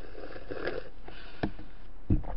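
A person drinking from a small paper drink carton, with a soft breathy sound in the first second, then a single light knock about one and a half seconds in.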